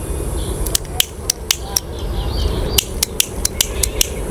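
A series of sharp, irregular clicks over a low steady rumble, coming in a quick run about three seconds in.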